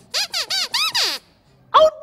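Squeaker voice of a dog glove puppet: four quick, high squeaks in a row, each curving up and down in pitch, like a squeaky garbled word.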